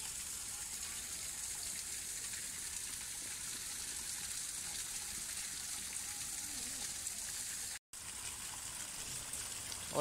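Steady splashing hiss of water falling from a small artificial rock waterfall into a pond. Its flow is weak. The sound cuts out for an instant just before eight seconds in.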